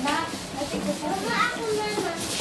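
Young children's voices: a high call at the start and another about a second and a half in.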